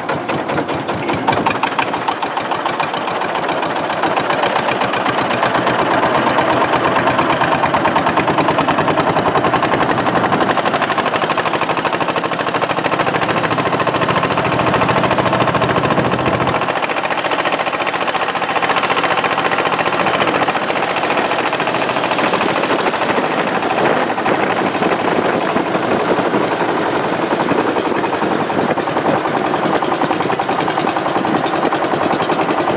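Long-tail boat engine running steadily under way, a loud, rapid, even pulsing.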